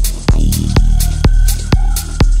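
Dark techno track: a steady four-on-the-floor kick drum, about two beats a second, over a deep droning bass. A thin high synth tone comes in partway through.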